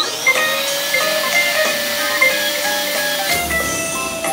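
Electric balloon pump running as it blows up a balloon: its motor whine rises as it starts, holds steady with a rush of air for about three seconds, then falls away as it stops near the end. Background music plays throughout.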